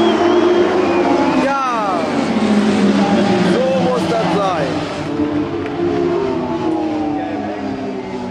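Several autocross race car engines running hard at once, overlapping engine notes at high revs. The pitch drops sharply about one and a half seconds in and again around four seconds, as cars lift off or pass by.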